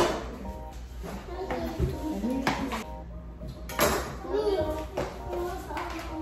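Indistinct voices talking under background music, with a few sharp clicks or knocks, near the start and around the middle.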